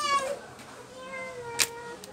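A high-pitched, drawn-out call in the background, held for about a second. A sharp click comes near the end.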